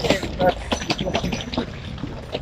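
Indistinct voices of people nearby, with scattered short clicks and knocks.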